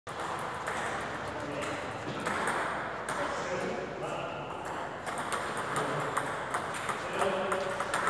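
Table tennis balls clicking off paddles and tables in several overlapping rallies, with voices talking in the background.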